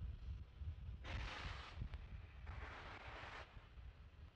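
Two bursts of hissing gas venting from a fuelled Falcon 9 rocket on the pad, each about a second long, a little over a second apart. A low, steady rumble runs beneath them.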